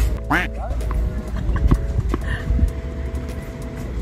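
Background music with long held notes, over a steady low rumble, with scattered light taps throughout and a brief gliding vocal sound about half a second in.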